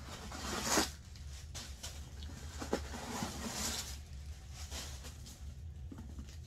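Handling noises from a leather satchel: two brief swishing rustles, the first about half a second in and the second about three and a half seconds in, with a few light clicks between them.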